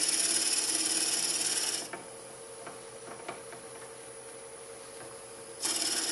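A 5/16-inch drill bit in a tailstock Jacobs chuck cutting into wood spinning on a lathe at about 525 rpm. The high-pitched cutting noise stops about two seconds in as the bit is backed off, leaving the lathe running with a steady low hum and a few light clicks. The bit cuts again near the end.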